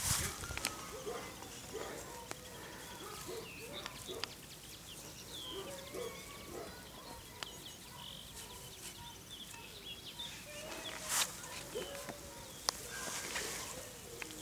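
Faint birdsong, short chirps and lower calls repeating throughout, with a few brief rustling and handling noises, the loudest about eleven seconds in.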